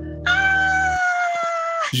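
A high-pitched voice holds one long squealing note that slides slightly down in pitch and stops just before the end, over the last chord of a backing track, which stops about a second in.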